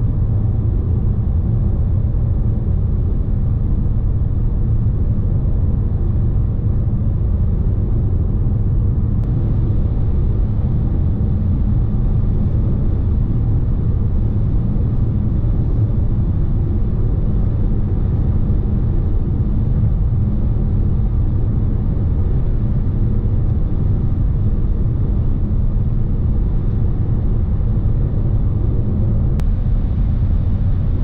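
In-cabin noise of a 2023 Renault Austral 160 Esprit Alpine MHEV (1.3-litre four-cylinder petrol mild hybrid with CVT) cruising and gradually accelerating on the motorway from 100 to 140 km/h. It is a steady low rumble of tyres, wind and engine.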